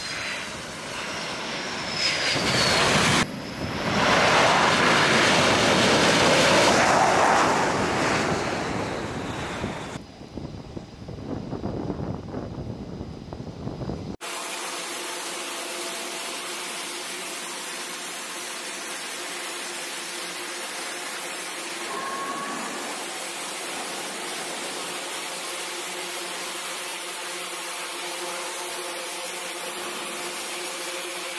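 F/A-18 Super Hornet jet engines as the aircraft comes in to land on a carrier deck, swelling loud a few seconds in and easing off around ten seconds in. After an abrupt change about halfway through, a steady jet engine idling hum with several steady tones in it runs on.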